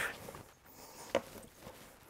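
Faint handling sounds of gloved hands working a raw turkey on a plastic cutting board, with one short tap a little past a second in.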